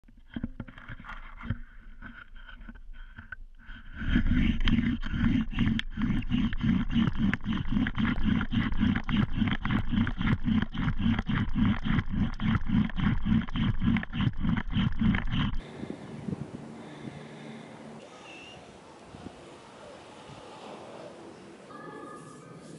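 Bow drill in use: a wooden spindle spun back and forth by a bow in a wooden fire board, each stroke making a loud friction sound. The strokes are uneven for the first few seconds, then run steadily and louder at about three to four a second, and stop abruptly about two-thirds of the way in, leaving a quiet outdoor background.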